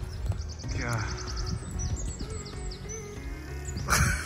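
A songbird singing: a quick high trill of evenly spaced notes, then a string of short down-slurred whistled notes, over a low outdoor rumble.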